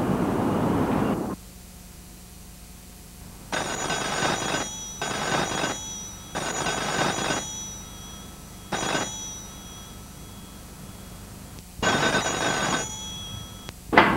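A telephone ringing in five bursts of about a second each, with gaps between them. Each ring is a bright ringtone of several steady high pitches, and the fourth ring is shorter. Before the first ring, music cuts off about a second in.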